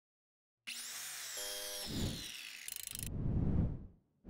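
Channel intro sound effects under a logo reveal: a high hiss with a falling whine starts a little under a second in, a brief buzzing tone follows, then low whirring rumbles build and are loudest near the end.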